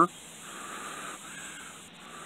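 Soft breathy hiss in two long stretches: a person blowing on a smouldering cotton fire-roll ember to keep it glowing.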